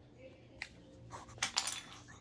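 A few short, sharp clicks and knocks, one about a third of the way in and a quick cluster in the second half.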